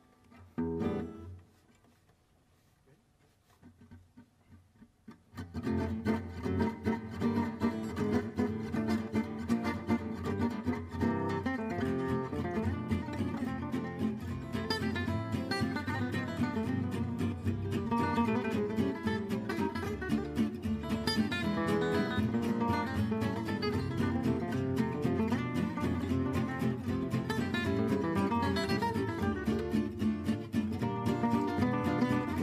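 Gypsy-jazz acoustic guitars with upright bass playing a musette waltz. After a near-quiet lead-in with one brief sound about a second in and a few soft ticks, the full ensemble comes in about five seconds in and plays on steadily.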